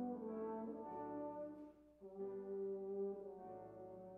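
Organ playing slow, sustained chords that change every second or so, with a brief break about halfway through before a new chord begins.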